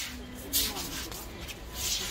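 Two short rustling noises, about half a second in and again near the end, with faint low speech near the start over a steady low background hum.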